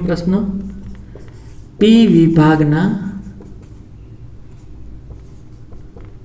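Dry-erase marker scratching on a whiteboard as words are written out by hand, in short faint strokes. A man's voice breaks in briefly at the start and again about two seconds in.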